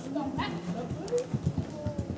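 Hoofbeats of a horse cantering on soft arena footing: a few dull, heavy thuds, clustered in the second half. People talking and laughing can be heard faintly alongside them.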